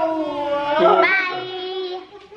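A child humming a sing-song tune in long drawn-out notes, with a new rising note about a second in.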